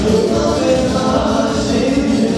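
Live band dance music with singing over a steady beat.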